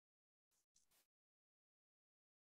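Near silence, broken about half a second in by two faint, short hissing sounds in quick succession.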